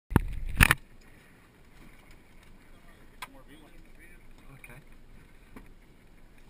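A loud thump in the first second, then the low steady sound of sea and wind around a small open boat, with a faint voice about halfway through.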